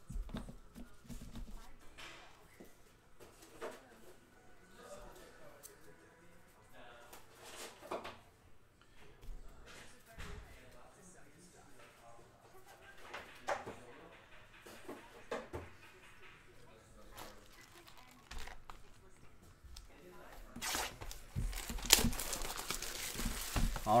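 Clear plastic shrink wrap crinkling and tearing as it is stripped off a sealed box of trading cards, loudest over the last few seconds. Before that, only faint scattered clicks and handling noises.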